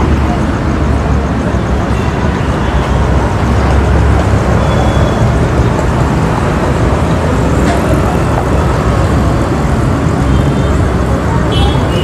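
Steady outdoor din dominated by a low rumble of road traffic, mixed with background crowd chatter.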